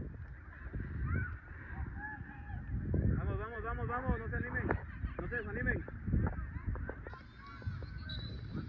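Birds honking in a string of short, arched calls, thickest in the middle, over a low rumble of wind on the microphone.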